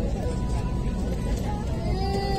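Steady low rumble in the cabin of a parked airliner, with faint voices and tones over it.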